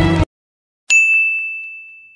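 Intro theme music cuts off abruptly, then after a short silence a single bright ding sound effect rings out on one high note and slowly fades away.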